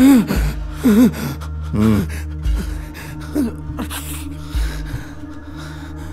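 A man gasping and crying out in pain in several short cries about a second apart that grow weaker, over a low, steady music drone.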